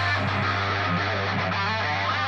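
Electric guitar playing a quick metal riff of many short picked notes, over a steady low note.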